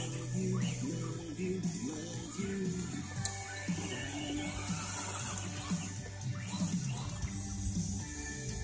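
Music playing on a radio, with a steady bass line and changing held notes.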